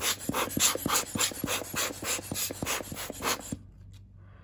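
Hand-squeezed rubber air blower puffing air in quick repeated bursts, about five a second, to blow dust off a camera's image sensor through the open lens mount. The puffs stop shortly before the end.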